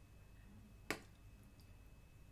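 Near silence with one short, sharp click a little before a second in.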